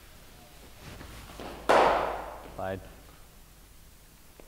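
Cricket bat striking a ball in an indoor practice net: one sharp crack a little under two seconds in, trailing off in the hall's echo. A short vocal sound follows soon after.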